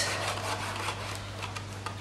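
Tombow liquid glue applicator tip rubbed back and forth over the card base of a paper box, a steady rubbing on paper as glue is spread.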